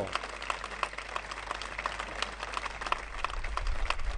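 Crowd applauding, many hands clapping at once.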